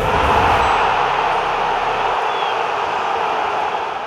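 Logo sting sound effect: the low rumble of a deep boom dies away in the first second or two, leaving a steady rushing noise that fades near the end.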